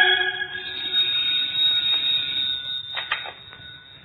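The end of an organ music bridge fades out, and a telephone bell sound effect rings steadily. A couple of clicks follow about three seconds in, as the receiver is picked up.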